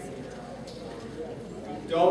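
Indistinct, distant speech in a large room, with a few faint knocks.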